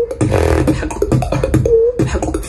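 Solo vocal beatboxing in a competition wildcard routine: a quick beat of mouth-made kicks and snare clicks with a short hummed tone woven in, and a buzzy, many-toned vocal sound about half a second in. The recording is bright, with the technical sounds coming through well and the bass weaker.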